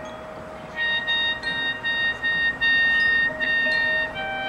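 Marching band pit percussion playing high, bell-like notes over a held lower tone. The notes come in about a second in and repeat mostly on one pitch.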